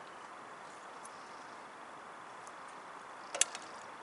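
A small metal camping pot set down onto metal cookware about three and a half seconds in: one sharp clink with a lighter tap just before and after. A faint steady hiss runs underneath.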